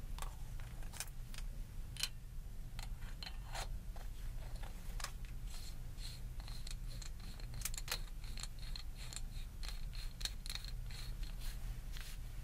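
Irregular small metallic clicks and taps as a metal cylinder with a rubbery grip is handled and turned in the fingers, with a faint steady low hum underneath.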